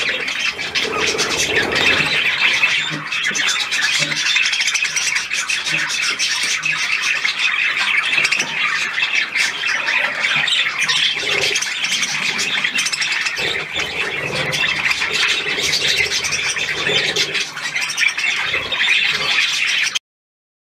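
A flock of budgerigars chattering and squawking all at once, a dense, unbroken warble of many birds calling together.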